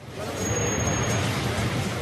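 Road traffic noise: a steady rumble of vehicles running, with a brief thin high whistle about half a second in.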